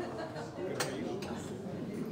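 Faint voices in the room with one sharp click a little under a second in.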